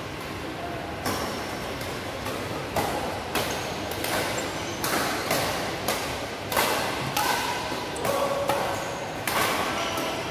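Badminton rackets striking a shuttlecock in a fast rally, with sharp, irregular hits about every half second to a second that echo in a large hall. Brief high squeaks of court shoes on the floor come between the hits.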